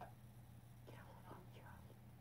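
Near silence: low room hum, with a couple of faint, indistinct voice-like sounds.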